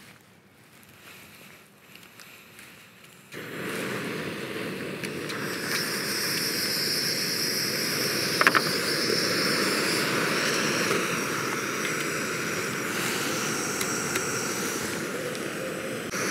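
Gas canister stove burners (an MSR Windburner and a Jetboil Minimo) lit about three seconds in, then burning with a steady rushing hiss that grows a little a couple of seconds later as the second burner runs. A single sharp click about halfway.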